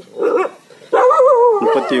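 A dog vocalizing: a short bark near the start, then a long whine with a wavering pitch from about halfway through.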